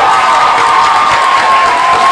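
Live audience applauding and cheering loudly at the end of a song, with one long high cheer held over the clapping.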